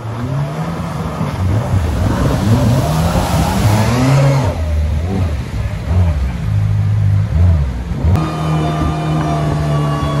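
Jet boat engine revving up and down as the boat powers through river rapids, with a rush of water and spray loudest in the first half. A little past eight seconds the sound changes suddenly to a steady, even drone.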